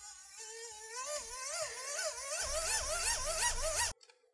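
An electronic warbling tone that wavers up and down in pitch, its swings growing wider and faster as it climbs. A low rumble joins about halfway, and the whole sound cuts off suddenly near the end.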